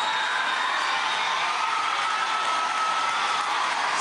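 Audience applauding and cheering in a large hall: steady, even clapping about as loud as the speech around it.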